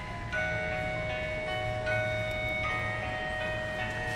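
Christmas melody playing from a Disney animated holiday village's built-in speaker, turned up: a tune of held, ringing notes that comes in about a third of a second in.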